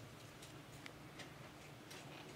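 Faint, irregular light clicks, about four in two seconds, from fingers handling an opened smartphone's plastic frame and internal parts, over a low steady hum.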